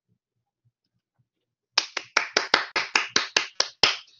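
One person clapping after a speech, about a dozen quick, evenly spaced claps starting a little before halfway through.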